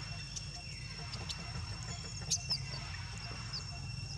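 Outdoor ambience: a steady, high-pitched insect drone over a low hum, with a few brief high chirps a little past halfway and another near the end.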